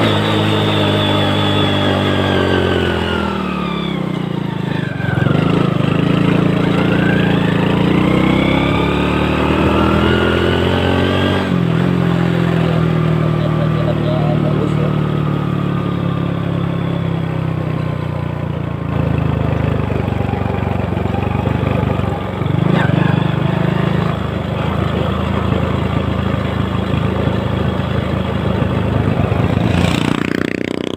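1993 Honda Astrea Grand's small four-stroke single-cylinder engine running under way, heard from the rider's seat. Its pitch sinks a few seconds in, climbs steadily again, drops abruptly about a third of the way through, then runs fairly evenly.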